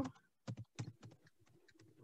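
A few faint, scattered computer keyboard keystrokes, single clicks in the first half.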